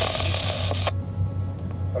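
Two-way marine radio hiss from an open transmission that cuts off abruptly about a second in, over the steady low hum of a motor boat's engine.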